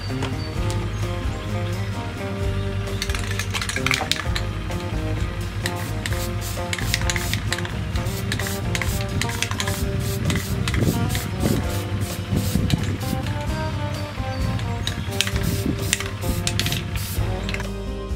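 Aerosol spray paint can hissing in several short bursts as small metal hinges and latches are sprayed black, over background music.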